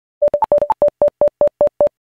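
Intro sound effect: a quick run of about a dozen short electronic beeps, mostly on one pitch with two higher ones in the first second, settling into an even beat of about five a second.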